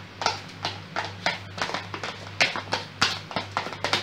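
Metal spoon knocking and scraping against a stainless steel mixing bowl while thick cake batter is cut and folded, a string of irregular taps, about two or three a second.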